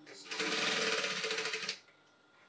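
Industrial single-needle sewing machine running a short burst of stitching, about a second and a half long, with a fast, even stitch rhythm that starts just after the beginning and stops abruptly.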